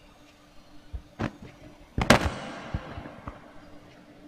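Handling noise close to a microphone: two knocks about a second in, then a loud sharp thud about two seconds in followed by about a second of rustle, and a couple of light knocks after it. A faint steady hum runs underneath.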